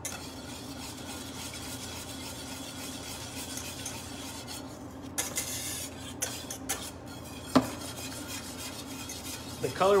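Wire whisk scraping steadily around a steel sauté pan as butter is whisked into a beurre rouge (red wine butter sauce) to emulsify it, over a low steady hum. One sharp clink stands out about three-quarters of the way through.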